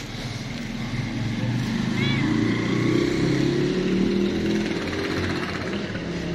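A passing motor vehicle's engine drones, growing louder to a peak in the middle and easing off near the end. One short cat meow comes about two seconds in.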